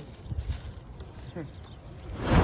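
A short vocal sound from a person, rising then falling in pitch, about one and a half seconds in. It sits over a low, rumbling outdoor background with a few faint clicks.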